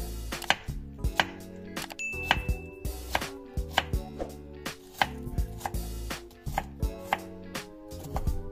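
Kitchen knife dicing onion on a wooden cutting board: sharp, irregular chopping strikes, about one or two a second.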